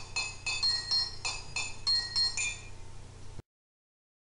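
Quick run of bright, glassy clinking chimes, each strike ringing at its own high pitch, over a low steady hum; it cuts off suddenly about three and a half seconds in.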